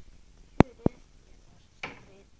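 Two sharp clicks about a quarter of a second apart, then a brief scraping noise near the end.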